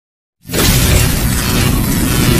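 Channel-intro logo sound effect: a loud, dense rush of noise with a heavy low end that starts sharply about half a second in and holds steady.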